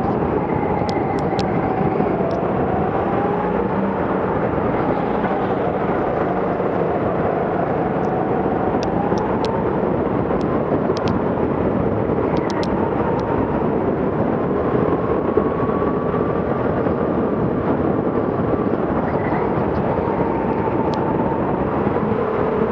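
A go-kart driven hard on a lap, heard from the driver's seat: a continuous rough motor note whose pitch rises and falls with throttle through the corners, with a few faint clicks.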